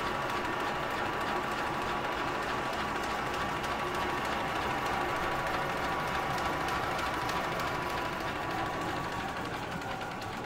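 GM DC330Mini label finishing machine running at full production speed, a steady mechanical whir with a fast, fine clicking from its rollers and label web and a few steady whining tones. Its level begins to drop near the end.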